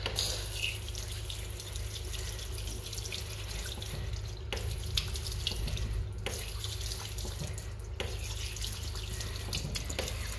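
Water running from a chrome tap into an Armitage Shanks undercounter ceramic basin and down the drain. It starts suddenly at the outset and runs steadily, with a few very short breaks.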